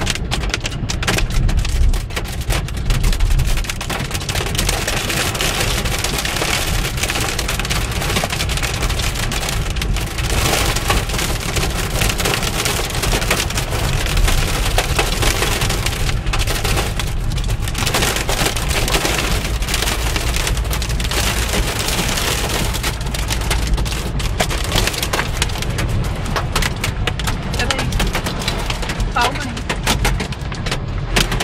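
Hail and heavy rain pelting a car's roof and windshield, heard from inside the cabin: a loud, unbroken clatter of countless hard hits over the rush of the downpour.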